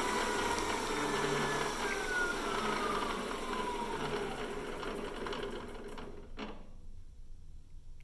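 PM-728VT milling machine spindle slowing down as its speed control is turned down: its whine falls steadily in pitch and fades until the spindle stops about six seconds in. A single click follows.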